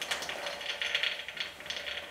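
Dry tapioca pearls poured from a plastic bag into a glass jug: a dense, fast run of small hard clicks as the pellets strike the glass and each other, thinning out near the end.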